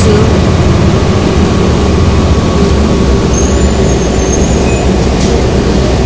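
Steady, loud rumble of a moving bus heard from inside the cabin: engine and road noise with no break.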